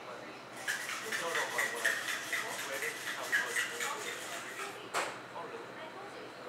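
A metal drink shaker being shaken hard: a fast, steady rattle lasting about four seconds, then one sharp clack just after it stops.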